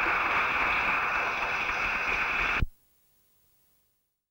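Audience applause, a dense steady clatter of clapping, that cuts off abruptly with a click about two and a half seconds in as the cassette recording stops, leaving near silence.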